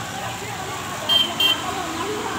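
Two short high-pitched electronic beeps about a third of a second apart, over a steady murmur of voices and street traffic.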